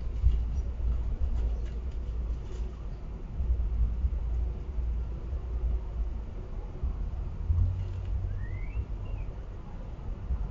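Low, uneven outdoor rumble, with a short rising bird chirp and a second brief note about eight and a half seconds in.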